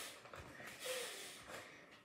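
A boy's breathy exhale through the nose, like a soft snort, as he rolls over on the floor, with a brief faint bit of voice about a second in.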